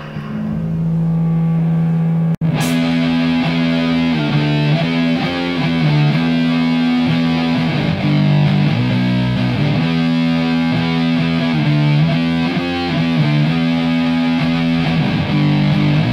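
Heavy stoner/sludge rock: a fuzz-distorted electric guitar holds low notes, cuts out abruptly for an instant a couple of seconds in, then comes back in with a slow, repeating riff.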